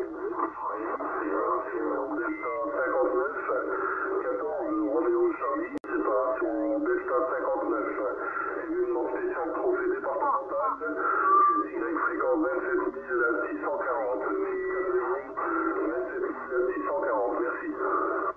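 Voices of distant 11-metre stations received on a Yaesu HF transceiver tuned to 27.555 MHz in upper sideband, played through its speaker. The sound is thin and narrow, with only middle tones, and talk runs continuously, with a brief dropout about six seconds in.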